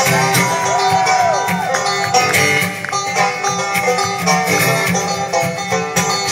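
Live acoustic band playing an instrumental passage with banjo and guitar picking, a few bent notes in the first second and a half, heard over the PA from within the audience.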